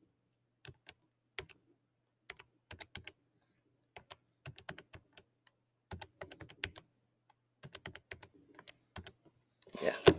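Faint tapping of keys: irregular clicks, some in quick runs of several taps, like typing on a keyboard.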